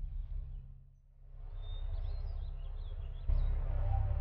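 Outdoor ambience with a few short bird chirps, after the sound dips almost to silence about a second in. Near the end a low, steady background music comes in suddenly.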